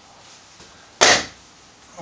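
A single short, sharp clack about a second in, from a ruler and marker pens being handled at a whiteboard, over quiet room tone.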